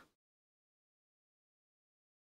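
Near silence: dead, empty sound between stretches of speech.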